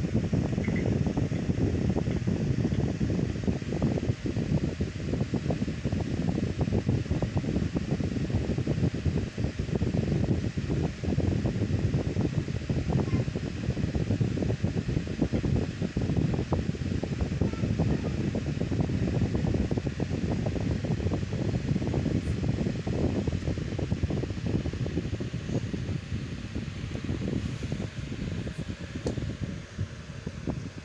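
Steady low rumbling air noise from a fan, its draught buffeting the microphone.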